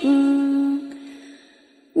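A single chanting voice holds one long, steady note at the end of a line of Vietnamese verse. It fades away after about a second, leaving a moment of near silence.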